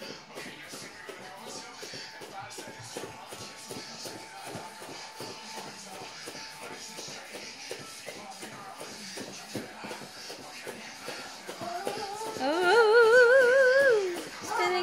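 Soft, repeated thuds of bare feet landing on a foam play mat as a man jumps and runs in place, over a faint background. Near the end a loud, high, wavering voice cuts in for about two seconds.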